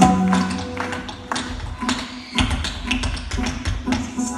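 Tap shoes clicking on a wooden stage in fast, irregular rhythmic patterns, alongside kathak footwork, over music.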